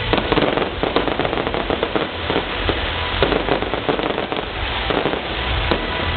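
Fireworks display: a dense, irregular stream of sharp crackles and bangs from bursting stars and spark fountains, starting suddenly.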